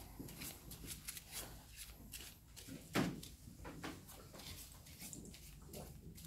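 A deck of playing cards being shuffled by hand: faint, scattered soft flicks and clicks of the cards, with one louder short sound about three seconds in.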